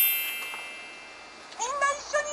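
A rising chime sweep that rings on and fades away over the first second, then a short, high, squeaky cartoon-like voice call with a bending pitch near the end.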